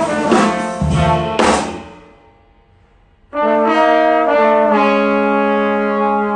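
Jazz group of two trombones, piano, upright bass and drums playing, then stopping together about a second and a half in. After a near-silent break of over a second, the two trombones come back in with held notes in harmony, moving to new notes a few times.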